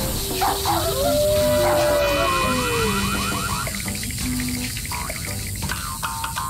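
Cartoon background music with short held notes and a long tone that slowly falls in pitch from about one to three seconds in.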